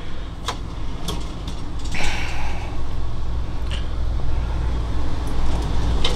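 Steady low hum under a few light clicks and knocks and a short rustle about two seconds in, from the wooden pantry cabinet door and its wire racks being handled in the motorhome.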